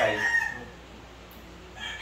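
A rooster crowing, its call trailing off in the first half second.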